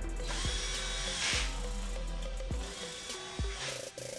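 Cordless drill/driver run in two bursts at the front wheel of a Xiaomi Mijia M365 electric scooter: a motor whine of about a second near the start, then a shorter one near the end, while a fastener is driven during the wheel change. Background music plays underneath.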